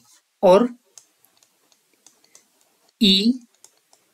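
Two short spoken words with faint, irregular light clicks between them, from a stylus tapping on a writing tablet while handwriting.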